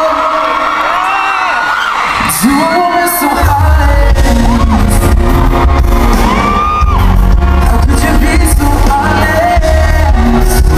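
Live cover of a pop song: a male voice singing over a strummed acoustic guitar, with a heavy low bass-and-drum beat that comes in about three and a half seconds in. Audience whoops and screams can be heard just before the beat enters.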